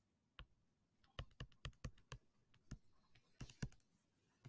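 Faint, quick taps of a stylus on a tablet screen as an equation is handwritten: about a dozen short clicks, one for each pen stroke, bunched over the last three seconds.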